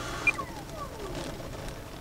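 The 120mm electric ducted fan of an HSD T-33 model jet winding down, a faint whine falling in pitch over about a second, with a brief high chirp near the start.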